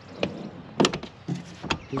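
Three sharp knocks and clunks, the loudest a little under a second in, from a 1999 Jeep Cherokee's door being handled and pushed shut. These doors really don't shut that well.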